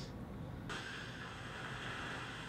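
Phone speaker playing back a sleep-tracking app's overnight recording: a faint, steady hiss of the recording's background noise that starts abruptly just under a second in, with no clear words in it.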